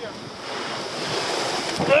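Sea surf breaking and washing against a rocky shore, a rushing sound that builds from about half a second in, with wind on the microphone.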